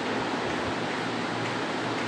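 Steady, even hiss of background noise with no speech.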